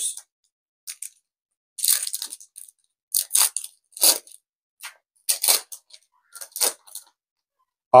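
A foil Pokémon booster pack wrapper being crinkled and torn open by hand, in a run of short, irregular crackles and rips.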